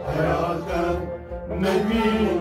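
Kashmiri Sufi song: a male voice singing a chant-like line over harmonium and bowed sarangi, with a steady low beat underneath.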